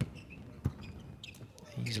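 A volleyball struck by hand during a rally: one sharp smack about two-thirds of a second in, in a large, echoing indoor hall. It fits Japan's receiver passing the float serve.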